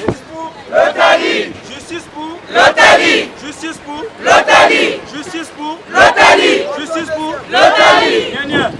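A crowd of marchers chanting a short slogan together, a loud shout about every second and a half to two seconds with quieter voices in the gaps.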